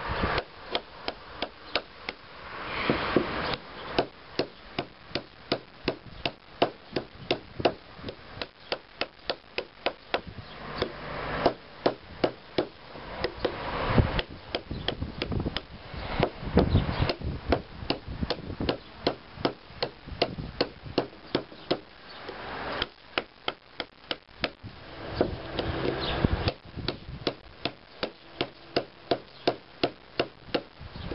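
Cherusker Anduranz knife chopping repeatedly into a thin wooden stick: a long run of sharp chops, about two a second, with a few short pauses.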